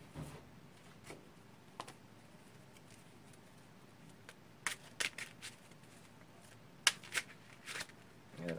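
A small deck of oracle cards being handled and shuffled by hand: scattered short card snaps and flicks, a quick cluster about five seconds in and the sharpest snap about seven seconds in.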